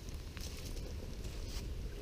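Low wind rumble on the microphone with a small stick campfire burning, and one faint tick about a third of a second in.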